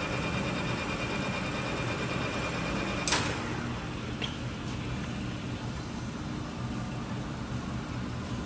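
Clausing Colchester 15-inch gap-bed lathe running with a steady gear hum and a thin high whine. About three seconds in there is a sharp clack and the whine stops, followed a second later by a lighter click, while the machine keeps humming.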